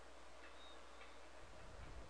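Near silence: room tone with two faint computer mouse clicks, about half a second and a second in.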